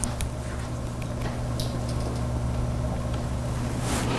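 Steady low electrical hum over a faint hiss, with a few faint clicks: the room tone of a lecture hall's sound system.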